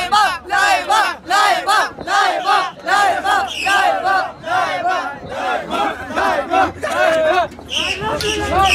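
A crowd of young men chanting and shouting together in a steady rhythm, with loud, short, repeated calls about two to three a second.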